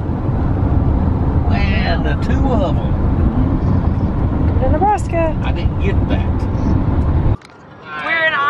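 Steady low rumble of road and engine noise inside a minivan's cabin at highway speed, with faint voices under it. The rumble cuts off suddenly near the end.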